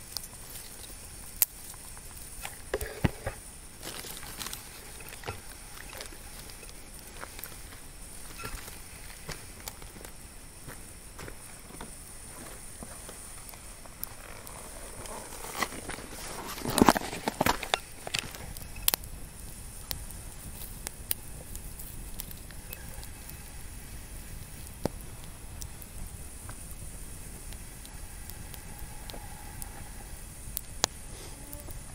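Wood campfire crackling, with scattered sharp pops and a louder, longer burst of noise just past halfway.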